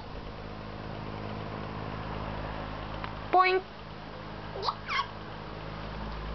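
A toddler's two short high-pitched squeals, each a quick sweep up and down in pitch, close together; a steady low hum runs underneath.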